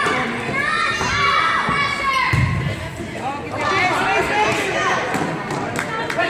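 Spectators and players shouting and cheering over one another, echoing in a school gym, with a single low thud about two and a half seconds in.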